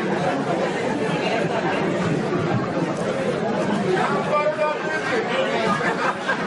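Audience chatter: many voices talking over one another at a steady level.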